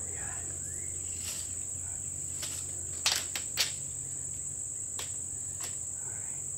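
Steady high-pitched drone of a summer insect chorus, with a few sharp clicks near the middle, the loudest two just after three seconds and about three and a half seconds in.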